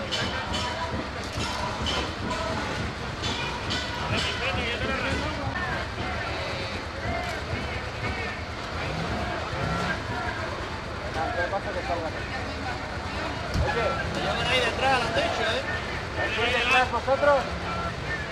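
Crowd of people shouting and talking over one another, the voices getting louder near the end, over a steady low rumble of street and vehicle noise. A single sharp knock comes about two-thirds of the way through.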